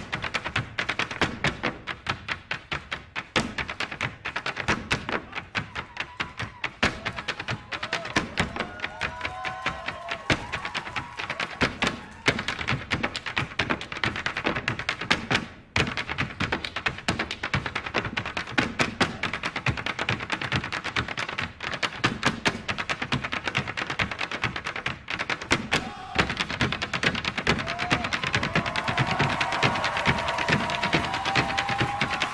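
A troupe of Irish hard-shoe dancers drumming out rapid, sharp taps in unison on the stage floor, over music; a melody line comes in about a third of the way through and again near the end.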